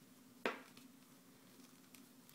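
One light click of plastic knitting needles knocking together about half a second in, while stitches are purled, over a faint steady hum.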